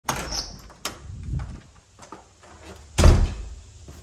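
Interior door with a brass knob being opened: the latch clicks sharply as the knob turns, then a second click and a softer knock follow. About three seconds in comes a heavy thud, the loudest sound.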